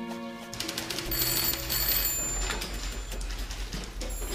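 Background music ends, then a telephone bell rings in two short bursts about a second in, over a low hum and a clatter of taps and knocks.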